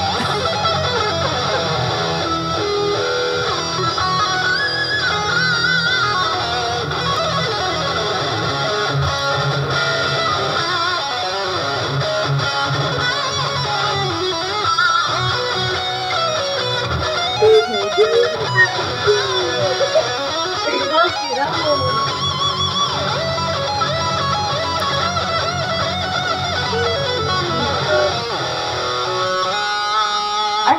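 Pink Hello Kitty electric guitar playing a continuous rock piece with sliding, bending notes and a few sharp, loud accents a little past halfway.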